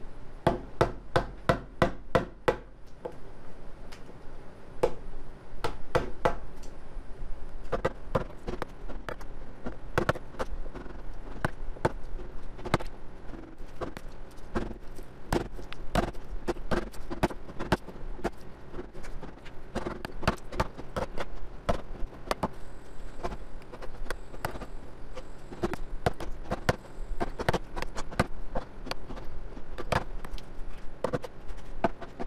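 Wooden mallet striking a chisel in a long series of sharp knocks, chipping bark off the live edge of a wood slab. The strikes come quickly at first, then keep on at an uneven pace.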